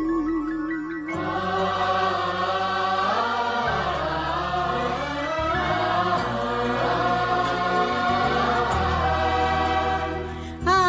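Bollywood film-song intro: a lone wavering vocal line, then about a second in a wordless choir and orchestra come in, holding long chanted notes.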